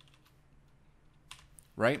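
Computer keyboard keystrokes: a few faint key taps, then a quick cluster of slightly louder taps a little past the middle.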